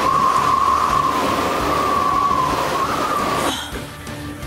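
Sci-fi transition sound effect: a dense rushing roar with a held, slightly wavering whine. It cuts off sharply about three and a half seconds in.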